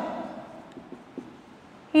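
Faint scratching of a marker writing on a whiteboard, with a couple of light ticks.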